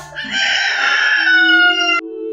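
A rooster crowing once: a single long call that slides slowly down in pitch.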